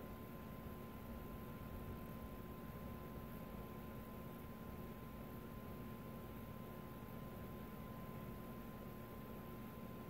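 Faint, steady hum of an electric space heater running in a small room, with a thin steady tone above it.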